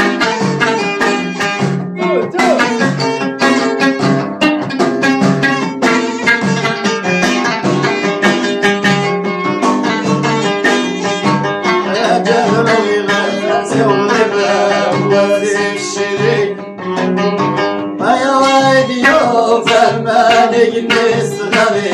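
Amazigh lotar (long-necked lute) plucked in a fast rhythmic line over hand-struck frame drums (bendir). A man's singing voice comes in about two-thirds of the way through, with a short lull just before the last few seconds.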